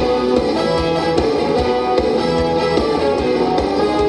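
Live rock band playing an instrumental passage between sung lines: electric guitars and bass guitar over a steady drum beat.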